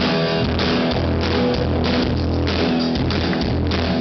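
A ska band playing live, with electric guitars and a drum kit, heard from within the crowd.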